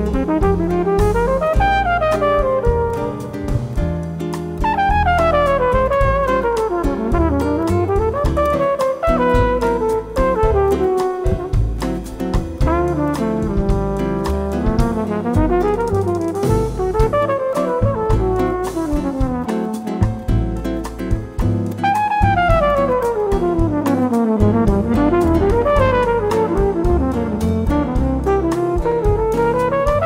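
Flugelhorn playing an improvised jazz solo in quick runs that climb and fall, over a bossa nova band of piano, guitar, bass and drums.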